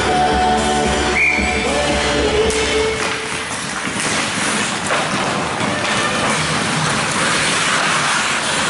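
Arena music over the rink's loudspeakers, cutting off about three seconds in as play resumes after the faceoff. Then the open noise of ice hockey play follows: skates on ice and a few sharp clacks of sticks or the puck.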